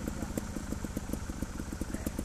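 Trial motorcycle engine idling, a rapid, even beat of firing pulses.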